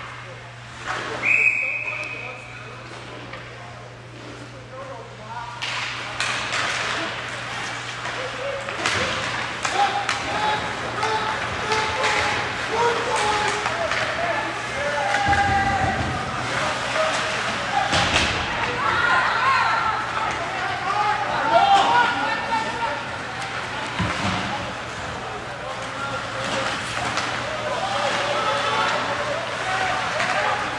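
Ice hockey game in an indoor rink: a single whistle blast of about a second, about a second in. Then the voices of players and spectators, with short clacks and thuds of sticks and puck on the ice and boards.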